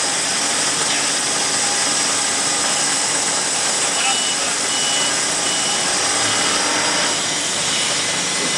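Steady, loud hissing machinery noise of a forge shop, with a few short high tones about halfway through.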